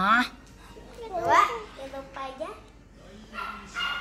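Young children's voices in short bursts of talk and exclamation, some with rising and falling pitch.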